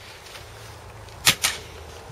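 A sharp knock of a hard object being handled about a second in, with a quicker, weaker click just after it, over a faint steady hum.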